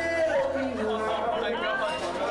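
Man singing live into a microphone over a strummed acoustic guitar, with people talking in the room underneath.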